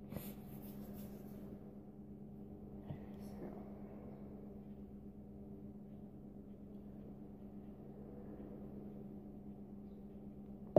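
Faint steady electrical hum in a kitchen, with a light click just after the start and another about three seconds in as a bottle is handled over a plastic cup.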